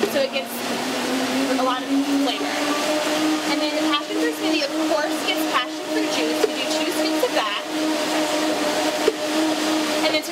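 A blender motor running steadily, its pitch climbing over the first couple of seconds and then holding, with scattered clinks of a metal scoop against a plastic blender jar.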